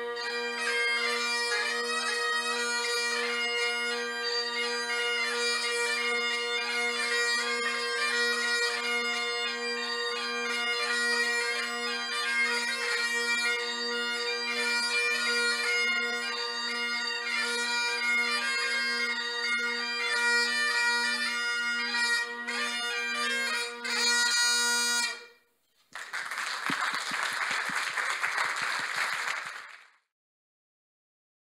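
Great Highland bagpipe playing a tune, the chanter melody over the steady drones, stopping abruptly about 25 seconds in. Applause follows for the last few seconds.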